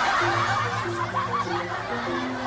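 Canned laughter from a group, several people chuckling at once, laid over background music with held low notes that step from one pitch to the next.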